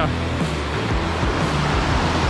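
Rushing river water pouring over rock rapids, a steady noise, with low background music underneath.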